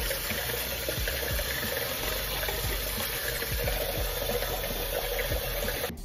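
Tap water running steadily into a sink, beginning and ending abruptly.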